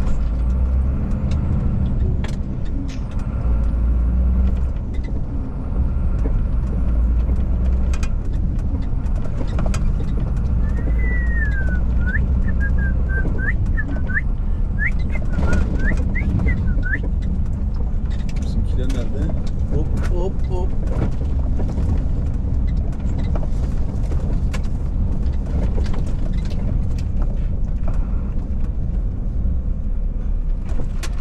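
Heavy truck's diesel engine running steadily as the rig drives slowly, a deep continuous rumble. A run of short high chirps comes in about a third of the way through.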